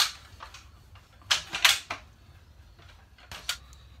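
Knocks and scrapes of a wooden walking stick being turned and handled in a metal bench clamp: a sharp knock at the start, a quick cluster of knocks and scrapes about a second and a half in, and two more near the end.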